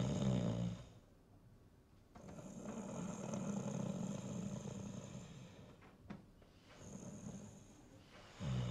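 A person snoring: a short snore at the start, a long drawn-out one from about two seconds in, and a weaker one near the end.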